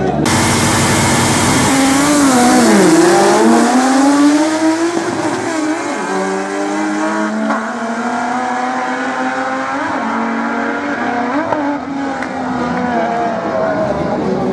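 Drag racing car engines accelerating hard down the strip. The engine pitch dips about three seconds in, then climbs steadily.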